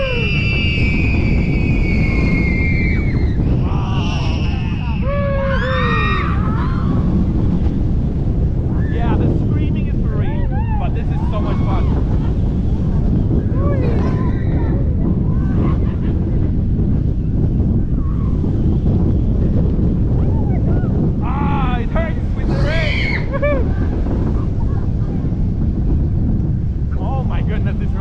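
Steel roller coaster train speeding through its drop and inversions, its running noise buried under wind rushing over the ride camera's microphone. Riders scream and whoop at the first drop and again twice later in the ride.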